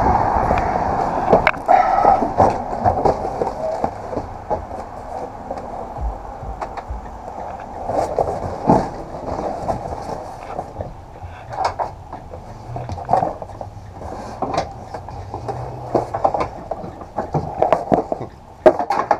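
Cardboard guitar boxes being shoved, slid and stacked inside a metal cargo van: a run of irregular knocks, bumps and scrapes.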